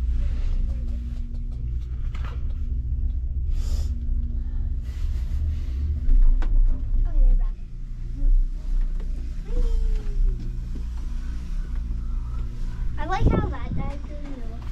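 A low, steady rumble with a faint steady hum underneath, lasting the whole time. Brief voices come in near the end.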